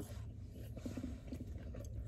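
Chewing fast-food chicken close to the microphone, with small irregular clicks and soft crackles, over a low steady hum.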